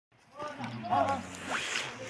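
Men's voices calling out on the slope, with a short rasping scrape about one and a half seconds in.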